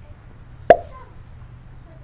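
A single sharp slap about two-thirds of a second in, with a brief tail: palms slapping down onto a padded exercise mat.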